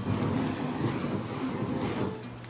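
Flames rushing across a wet spray-painted poster board as the paint's solvent burns off to set the colours: a steady, dense burning noise.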